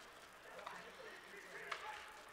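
Faint ice-hockey arena sound from play on the ice, with two faint clicks, the first under a second in and the second near the end.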